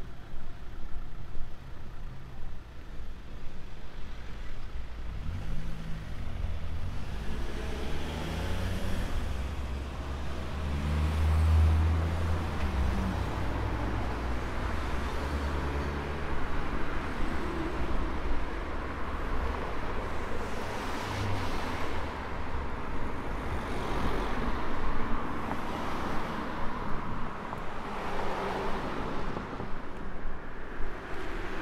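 Road traffic: cars passing on a road close by, as a steady rushing tyre and engine noise. A low rumble swells to its loudest about twelve seconds in as a vehicle goes by, and further vehicles pass in the second half.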